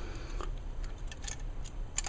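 Light plastic clicks and rattles of a Transformers action figure's jointed parts being moved by hand during transformation, with a sharper click near the end.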